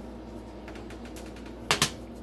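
A baked sugar cookie set down on a metal baking sheet, giving two quick, sharp clicks near the end.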